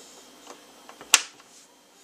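A faint steady low hum with a few light ticks and one sharp click about a second in.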